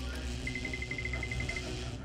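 Electric-machine sound effect: a steady low hum with a quick run of about a dozen short high beeps, about ten a second, in the middle.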